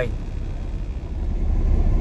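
Semi-truck engine idling, a steady low rumble heard from inside the cab, growing louder about a second in.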